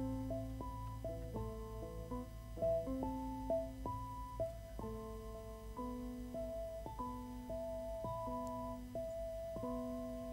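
Vibraphone played with soft yarn mallets: a slow, quiet line of single notes and chords, each struck cleanly and left ringing, with a steady low hum underneath.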